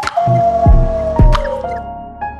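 Electronic logo jingle. A tone slides slowly down in pitch under short plinking notes. Two low thumps fall in pitch, and held notes come in near the end.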